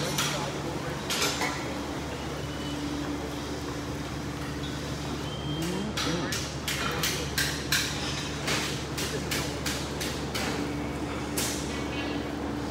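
A steady low mechanical hum, with a brief rise in pitch about six seconds in. After that comes a rapid string of sharp knocks and clanks.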